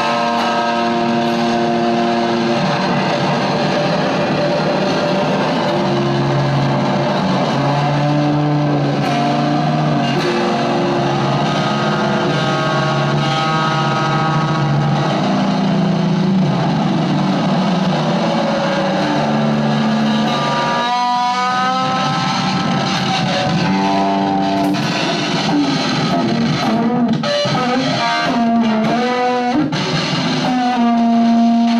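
Electric guitar fed through a floor full of effects pedals, playing free noise improvisation: dense layers of held tones and drones that step from pitch to pitch. A wobbling, warbling passage comes about two-thirds of the way through.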